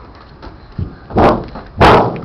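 Two heavy thumps about two-thirds of a second apart, the second the louder: a person's feet landing on a car's sheet-metal body while climbing up onto its roof.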